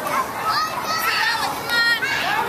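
Young children's voices shouting and chattering over one another as they play, with one high held shout near the end.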